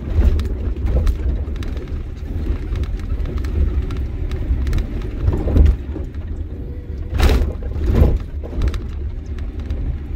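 Low road rumble of a car driving over a broken, potholed road, heard from inside. The suspension thuds over bumps several times, most strongly about halfway through and twice near the end.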